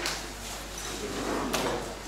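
A faint rustle of paper, then a single sharp click or knock about one and a half seconds in.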